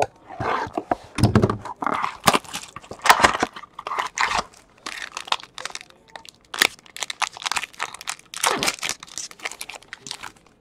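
Plastic shrink wrap on a sealed trading-card box being slit with a box cutter, torn off and crumpled by hand: an irregular run of crackling and tearing.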